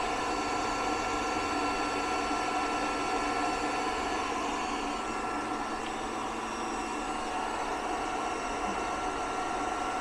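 Steady whir of a heat gun blowing on low and cooling fans running, with several steady high tones over it, while a 12 V pure sine wave inverter carries about 2000 watts of load from the heat gun and an induction cooktop.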